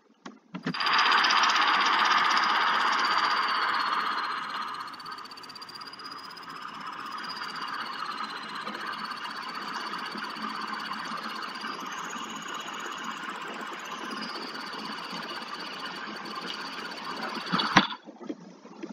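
Buzzing tone from a simulated 555-timer astable oscillator driving a speaker, played through a computer speaker. It is loud for the first few seconds, then steadier and quieter, with a thin high whistle in it that wavers in pitch and rises briefly about twelve seconds in.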